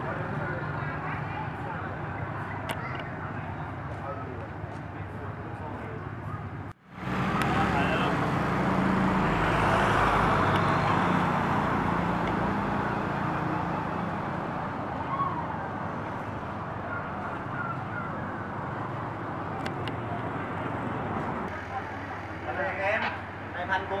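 Street traffic with indistinct voices: a steady wash of road noise, with a vehicle passing loudest a few seconds after a brief dropout about seven seconds in.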